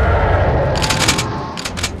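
Sci-fi battle sound effects: a rapid volley of blaster fire about a second in and a few more shots near the end, over a deep starship engine rumble that fades away.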